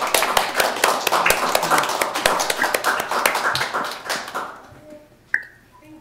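A small group of people applauding, the clapping dying away after about four seconds, followed by a single sharp tap.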